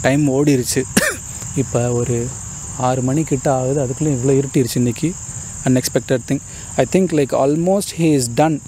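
Crickets chirring steadily and high-pitched under a man's talking voice.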